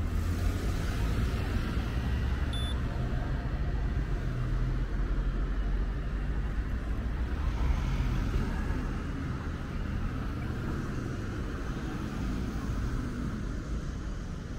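Road traffic at a city crossing: a steady low rumble of engines and tyres. A car passes close by about eight seconds in, its tyre hiss swelling and fading.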